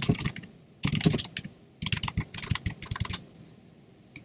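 Typing on a computer keyboard in three runs of quick keystrokes with short pauses between, the last run the longest.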